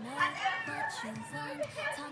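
Several young women's voices talking over one another in indistinct, lively chatter.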